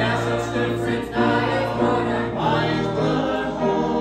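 Small mixed choir of men's and women's voices singing a gospel song in harmony, with held notes.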